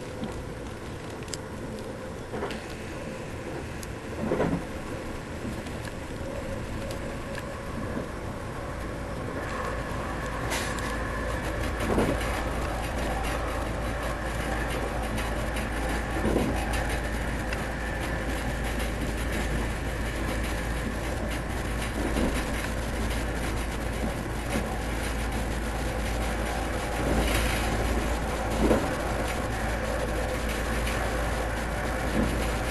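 Inside a Stadler FLIRT passenger train on the move: a steady running rumble that grows louder after about ten seconds as the train picks up speed, with a few short knocks scattered through it.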